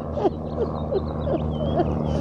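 A quick run of short whimpering cries, each sliding up or down in pitch, about three or four a second, over a steady low hum.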